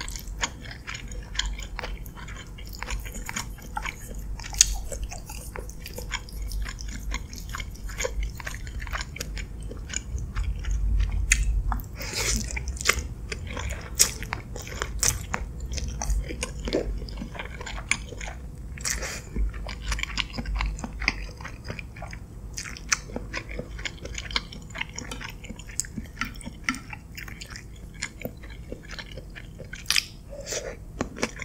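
Close-miked eating of creamy cheese-and-mushroom spaghetti with chicken: steady chewing with many small, irregular wet mouth clicks. A wooden fork works the noodles in a glass dish.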